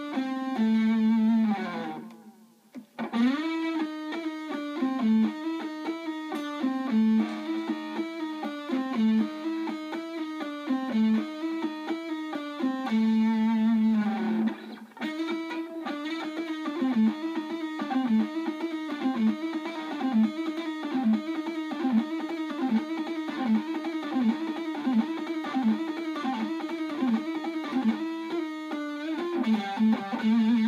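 Electric guitar played alone, repeating a fast A minor pentatonic lick full of notes bent up and back down. It breaks off briefly about two seconds in and again near the middle, then cycles the phrase about twice a second toward the end.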